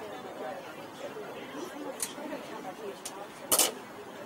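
Indistinct chatter of people talking, with two faint clicks and then one short, loud thump about three and a half seconds in.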